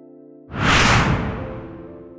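A loud whoosh sound effect starts suddenly about half a second in and fades away over about a second, laid over soft, sustained electric-piano chords of intro music.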